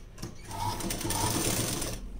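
Ruby sewing machine stitching a seam through fabric in one fast run of stitches that starts about half a second in.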